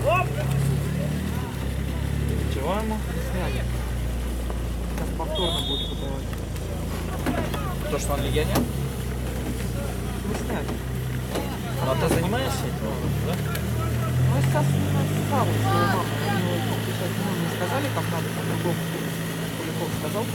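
Scattered, distant shouts and calls from players across an outdoor football pitch, over a steady low rumble.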